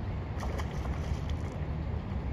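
Wind buffeting the microphone: a steady low rumble with a few faint clicks.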